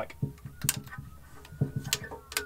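Plastic irrigation fittings and pipe clicking and knocking together as they are handled and fitted: a few separate clicks, two of them sharp, plus softer knocks.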